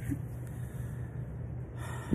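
A pause in a man's talk filled by a steady low hum in the background, with a quick inhaled breath near the end just before he speaks again.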